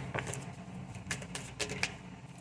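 A tarot card deck being handled and shuffled: a few light card clicks and flicks at irregular intervals.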